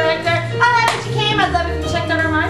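A woman singing over instrumental accompaniment, with low sustained notes underneath and one sharp clap a little under a second in.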